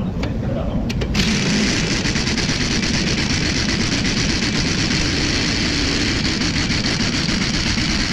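Impact wrench hammering steadily on a nut at the front strut's bracket, loosening it. It starts about a second in after a couple of trigger clicks.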